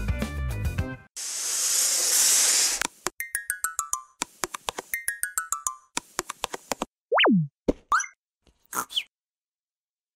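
Music cuts off about a second in, followed by an outro jingle of cartoon sound effects: a rushing whoosh, two quick runs of plucked notes stepping down in pitch, a single tone sliding steeply down (a boing) about seven seconds in, and a few short blips that end about nine seconds in.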